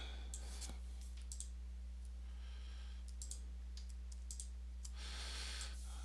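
Scattered light clicks of a computer mouse as a 3D view is dragged around, over a steady low electrical hum.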